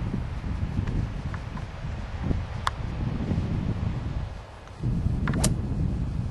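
Wind buffeting the camera microphone: a steady low rumble that drops away briefly a little past four seconds in, with a couple of short sharp clicks.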